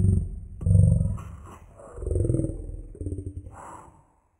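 A deep, rough growling roar in about three swells, the first and loudest at the start and the last fading just before the end.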